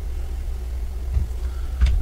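Steady low-pitched hum, with two short low thumps, one a little past a second in and a louder one near the end.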